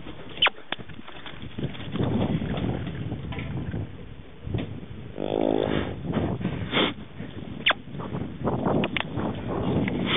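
Saddled yearling Quarter Horse filly walking over dirt and grass: soft, irregular hoofbeats and tack noise, with a few sharp clicks and a short, low pitched sound a little past halfway.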